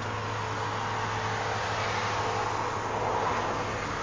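Steady motor vehicle noise: a low engine hum under a broad rushing sound that swells slightly past the middle.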